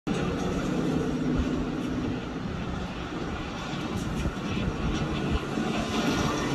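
Car engine running on a film soundtrack, heard through a TV speaker: a steady engine tone for about the first two seconds, then a rougher rumble.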